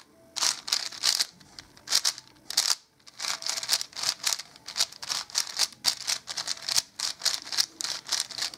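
Plastic 5x5 puzzle cube being turned quickly by hand: a fast, irregular run of short clicking, scraping layer turns, several a second.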